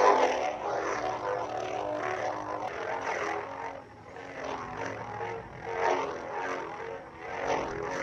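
Lightsaber sound font from a Xenopixel V3 soundboard playing through the saber's built-in speaker: a continuous buzzing hum that surges as the blade is swung, loudest right at the start and swelling again about three, six and seven and a half seconds in.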